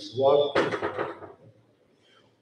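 A man speaking into a microphone for about a second and a half, then a pause with no sound.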